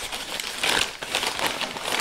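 Paper fast-food bag being unfolded and opened by hand, its stiff paper crinkling and rustling in irregular bursts.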